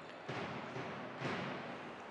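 Indoor sports-hall crowd noise during a handball match, a steady murmur that swells slightly twice.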